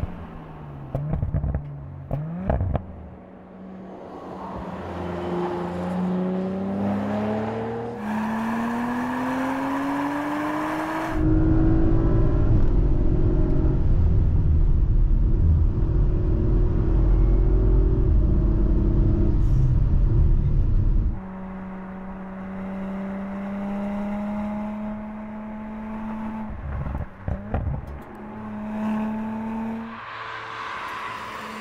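Audi RS 4 Avant's biturbo V6 under hard acceleration on a track, rising in pitch and dropping back at each upshift. About halfway through comes a stretch of loud, deep rumble heard from inside the cabin. Near the end the engine holds a steadier drone.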